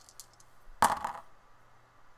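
Two dice thrown onto a game board: a sharp clatter a little under a second in as they land, with a brief rattle as they settle.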